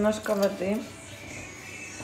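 A man's drawn-out voice at the start, then a faint steady sound of water poured in a thin stream from a glass jug into a tray of braising stock.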